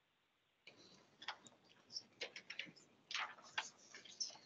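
Faint, irregular light clicks and rustles of papers and pens being handled at a meeting table, starting after a moment of near silence.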